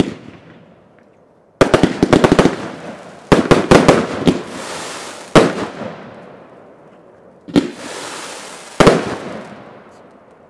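Wolff Universe firework shots going off: two quick volleys of sharp bangs, then single louder reports spaced a couple of seconds apart, each dying away in a fading hiss.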